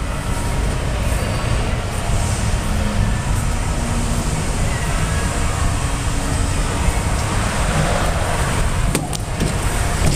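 Steady rushing background noise with a deep low rumble, even in level throughout, with no clear individual events.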